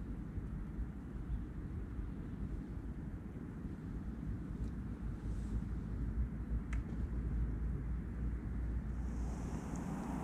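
Wind buffeting the microphone: a steady low rumble, with a faint click near seven seconds in.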